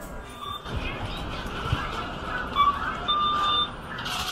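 Checkout counter with shop background music and electronic beeps from the till: a short beep, then a longer beep of about half a second near the end, with a few low knocks of handling at the counter.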